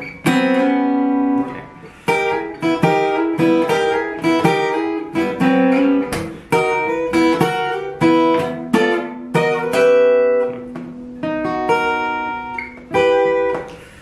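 Taylor steel-string acoustic guitar played fingerstyle in a boogie rhythm: three-note chords struck upward and slid up a fret, alternating with open-string bass notes.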